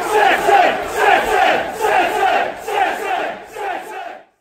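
Large football crowd chanting in unison, in a steady rhythm of about two beats a second.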